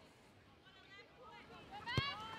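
Faint, distant voices of players on a football pitch, growing a little stronger toward the end, which ends with a sharp click.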